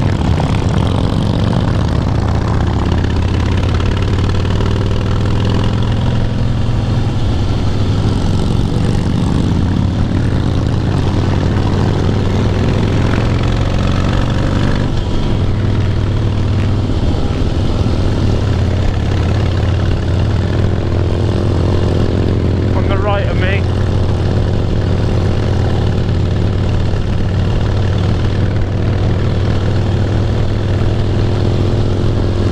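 Harley-Davidson Heritage Softail's V-twin engine running steadily at highway cruising speed, heard from a camera mounted on the bike with wind rushing past.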